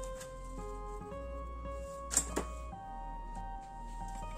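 Background music with held notes that change pitch every fraction of a second, and one short sharp noise a little after halfway.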